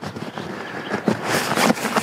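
Rustling and swishing of a down quilt's lightweight Pertex shell as it is pulled and spread over a sleeping pad, louder about halfway through.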